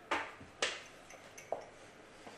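A metal baking tray with glass jars on it being set down on a glass-ceramic hob: three short knocks and clinks, the first two the loudest.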